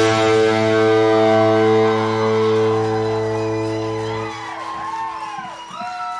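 A band's final chord on electric guitars and bass ringing out and slowly fading. The low notes stop about four seconds in. After that, high tones glide up and down as the chord dies away.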